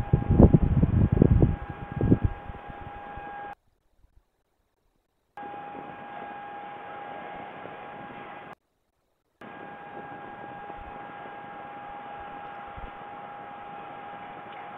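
Nest-box webcam audio: a steady high electrical whine over faint hiss. A loud burst of low rumbling noise fills the first two seconds. The sound cuts out completely twice, once for about two seconds and once for under a second.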